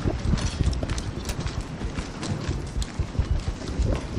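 Hurried footsteps on pavement, mixed with the knocks and rustle of a handheld camera jostling as its holder moves quickly along the street: a quick, uneven run of low thumps.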